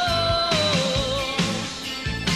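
Live band music from a pop concert, with a held melody note that slides down in pitch a little under a second in and then wavers.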